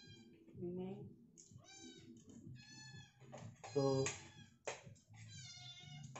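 About four high-pitched, wavering drawn-out calls, the loudest about four seconds in, with light clicks of spoons and forks on plates.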